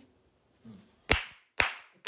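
Sharp hand claps in an even rhythm about half a second apart: two in the second half, and a third right at the end.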